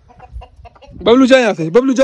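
Rooster calling loudly in a quick run of repeated squawks that starts about a second in, as a hand reaches in to catch it.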